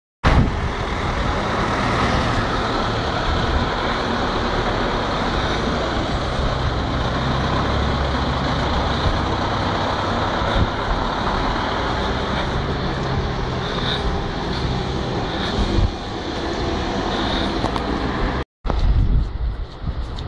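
Steady road-traffic noise from a jam of stationary trolleybuses and cars, with a continuous low rumble. The sound cuts out briefly near the end.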